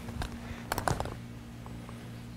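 A few light clicks and rattles, closely spaced in the first second, from a woman walking in work boots with tools in a loaded leather tool belt. A steady low hum runs underneath.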